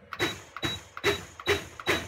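Countertop blender pulsed in five short bursts, about two a second, its motor whining up and cutting off each time as the blades chop a jar of whole bananas in water. It is being pulsed rather than run steadily, so no vortex forms while the fruit breaks down.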